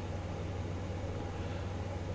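A steady low hum with a faint hiss behind it, unchanging throughout: background room or equipment noise.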